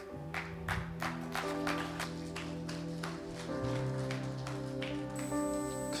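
Worship song intro: an acoustic guitar played in a steady rhythm of about four strokes a second over held chords, with a chord change about halfway through. A male voice starts singing at the very end.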